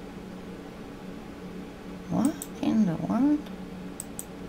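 Domestic cat meowing: a short run of rising-and-falling calls in the second half, over a steady low room hum.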